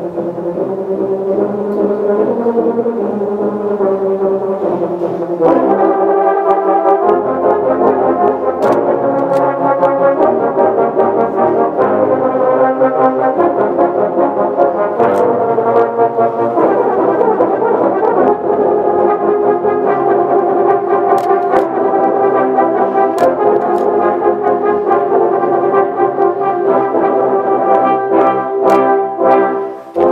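Tuba and euphonium ensemble playing sustained, chordal music, swelling louder about five seconds in, with a brief drop just before the end.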